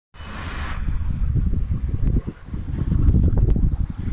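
Wind buffeting a handheld phone's microphone: a heavy, uneven rumble that gusts and dips, with a brief hiss in the first second and a few faint handling clicks.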